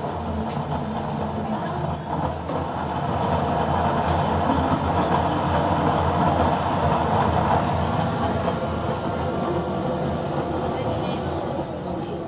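Used-oil burner stove running, its blue flame and forced-air blower making a steady rushing noise with a low hum underneath; it grows louder a few seconds in and eases off near the end.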